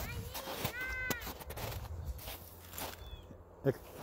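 A young girl's short, high-pitched wordless vocal sound, a squeal that rises and falls about a second in, over a low steady rumble.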